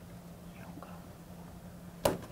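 Quiet room with a steady low electrical hum and a few faint, short squeaks of a dry-erase marker on a whiteboard, about half a second to a second in.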